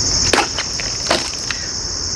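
An Odenwolf machete chops through a plastic water bottle with a sharp crack about a third of a second in, followed by a second sharp knock about a second in. A steady high drone of insects runs underneath.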